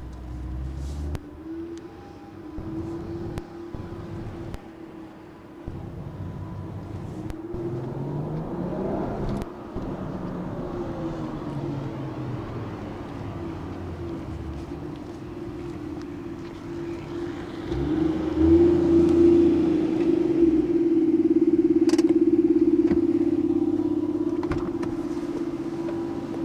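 Toyota Soarer 2.5GT-T's 1JZ-GTE turbocharged straight-six, breathing through an aftermarket muffler, driven around at low speed. The engine note rises and falls as it goes through the gears, then grows much louder about two-thirds of the way in as the car comes close and pulls up.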